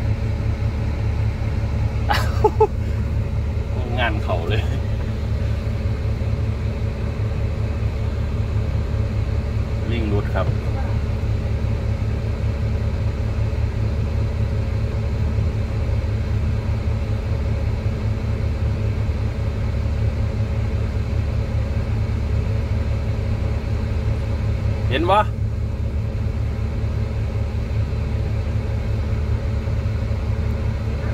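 Hydraulic excavator's diesel engine running steadily, heard from inside the cab as an even low rumble. A few brief voice calls cut in over it, at about two, four and ten seconds in and the loudest near the end.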